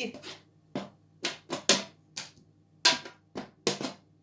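Wooden draughts pieces knocking onto a wooden board in a quick, irregular series of sharp clicks as a line of moves and captures is played out by hand.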